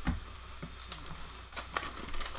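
Light rustling and scattered small taps of wax-paper packs and cardboard cards being handled, over a steady low hum.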